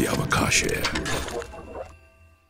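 TV programme ident sting: an electronic music bed with rapid mechanical clicking and ratcheting sound effects, fading out near the end.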